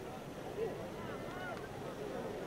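Spectators in a stadium crowd talking at once, many indistinct voices over a steady hiss.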